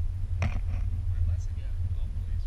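Steady low rumble of wind buffeting the microphone of a camera on a moving chairlift, with faint voices over it and a sharp click about half a second in.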